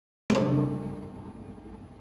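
Elevator electromagnetic drum brake releasing: a sudden metallic clunk about a third of a second in as the plungers pull the brake arms open against their springs. The clunk rings and fades over about a second into a fainter steady machine sound as the car starts down.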